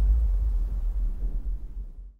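Deep, low rumbling boom of a logo-reveal sound effect, dying away near the end.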